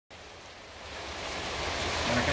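Steady rain falling, a even hiss that grows louder over the first second and a half.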